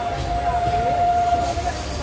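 Passenger train running, heard through an open barred carriage window: a low rumble with one steady high tone held for nearly two seconds, stopping shortly before the end.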